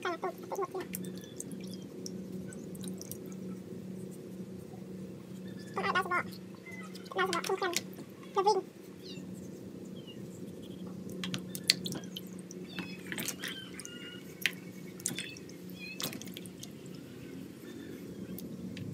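Knife cutting aloe vera leaves and the pieces dropping into a bowl of water, heard as scattered small clicks and drips over a steady low hum. A short laugh comes about seven seconds in.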